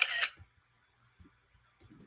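A short, breathy hiss from the man at the very start, then near quiet with a few faint small ticks.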